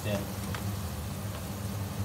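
Battered calamari rings sizzling steadily in hot oil in a frying pan, over a steady low hum.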